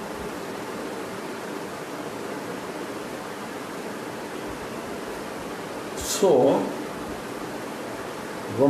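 A steady, even hiss of background noise, with a short spoken utterance from a man about six seconds in.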